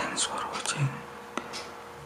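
A person whispering, breathy and hushed, with a single sharp click about one and a half seconds in.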